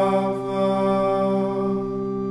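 Sung liturgical chant with organ accompaniment, holding one long sustained chord.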